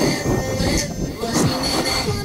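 Snowboard edges scraping over hard-packed snow, a rough, squealing slide, with music playing underneath.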